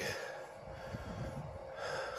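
A quiet pause in a man's speech, filled with a soft breath close to the microphone over faint outdoor background noise.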